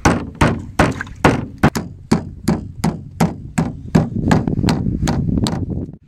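Meat-tenderizing mallet pounding a large slab of raw meat on a wooden cutting board, tenderizing it by breaking up its fibres. About seventeen sharp, evenly paced blows come at roughly three a second, stopping shortly before the end.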